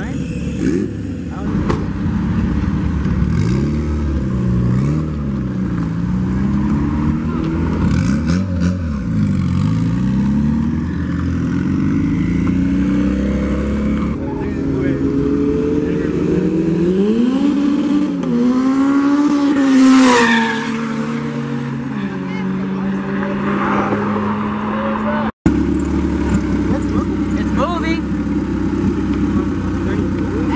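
Car engines revving, the pitch sweeping up and down several times. A car then accelerates hard, its engine note rising through a gear change and peaking about twenty seconds in before settling to a steady drone. After a sudden break, an engine runs steadily at a low pitch.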